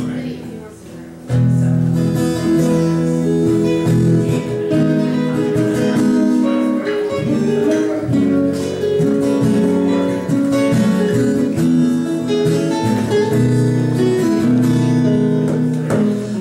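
Two acoustic guitars playing together, a classical nylon-string guitar picking the melody over a steel-string acoustic guitar. They pause briefly about a second in, then play on steadily.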